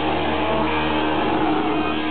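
Live heavy metal band holding a sustained, distorted electric guitar and bass drone, with no drum hits.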